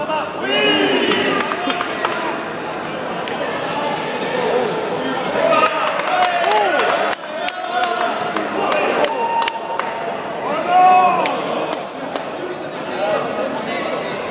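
Voices calling and shouting across a large sports hall, with many short, sharp smacks and thuds scattered through from a savate bout: gloved strikes and kicks landing and feet on the foam mat.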